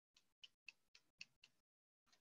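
Six faint, short ticks about four a second: a small hand tool tapping and scraping on card stock laid on a cutting mat while the pamphlet cover is trimmed.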